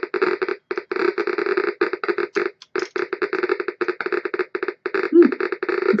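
CDV-700 Geiger counter clicking rapidly and irregularly through its speaker as its probe picks up radiation from a piece of Fiesta glass, at roughly 1,500 counts per minute.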